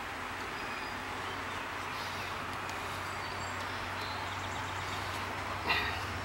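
Steady hum of a honeybee colony from an open top bar hive, even and unbroken.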